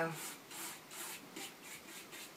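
A paintbrush laying wet finishing coat across a paper-decoupaged wooden lid and its painted edges: a few soft brushing strokes.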